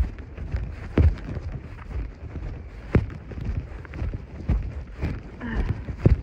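A horse's hooves thudding on dry, sandy pasture ground under a rider, a few heavy thumps a second or two apart, with wind rumbling on the microphone.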